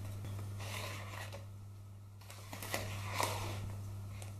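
Wooden spoon folding flour into cookie dough in a bowl: a few soft scrapes and taps, busiest a little past halfway, over a steady low hum.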